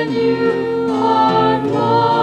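A small church music ensemble of keyboard, guitar and a singer playing a slow liturgical piece. Its chords are held long and change slowly.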